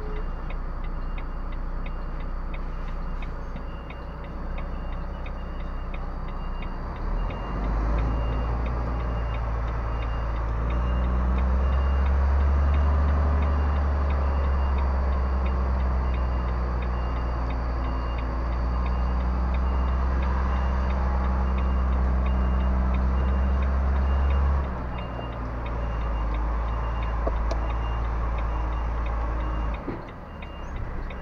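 Volvo FMX truck's diesel engine running, its revs and load rising about 7 seconds in, held until about 25 seconds in, then easing off as the rig with its low-loader trailer moves slowly. A faint steady ticking runs underneath throughout.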